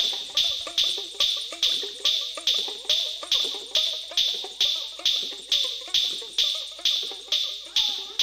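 A dhuduki, the plucked string drum of Odisha, played in short notes whose pitch bends up and down, over an even beat of sharp percussive strokes about two and a half a second.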